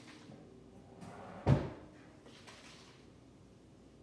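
A single dull thump about one and a half seconds in, against quiet room tone.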